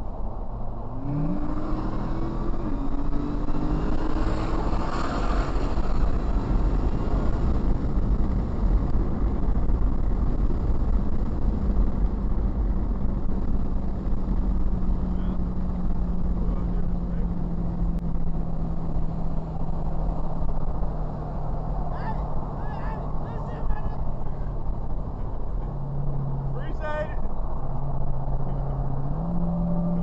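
Car engine heard from inside the cabin, over steady road rumble. Its note climbs under hard acceleration about a second in, holds a steady drone at highway speed, then steps down and back up near the end.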